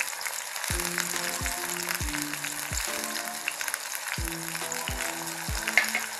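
Sliced onions and green chillies sizzling and crackling in hot oil in a wok, with a wooden spatula stirring them. Background music with a steady low beat plays under the sizzle.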